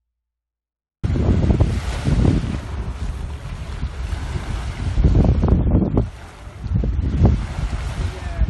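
Wind buffeting a mobile phone's microphone at the seashore: a loud, gusty rumble that starts about a second in and drops away briefly near six seconds before picking up again.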